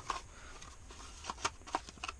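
Light handling noises of a spare H4 headlamp bulb and its paper box: a few short clicks and rustles, mostly in the second half.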